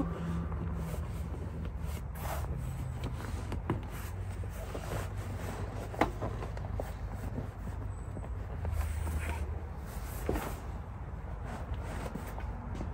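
Cloth seat cover rustling and being tugged over a vehicle's rear bench seat, with a few scattered small knocks and clicks, one sharper about halfway through. A steady low hum lies underneath.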